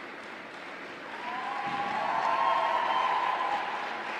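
Audience applauding in an ice rink, growing louder from about a second in and peaking around two to three seconds, with a held higher-pitched sound, likely cheering, over it.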